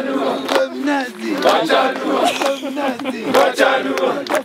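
A group of men in a Kilimanjaro climbing crew chanting and singing together with loud, shouted voices over sharp claps about twice a second. It is a send-off song praying that the climbers finish safely.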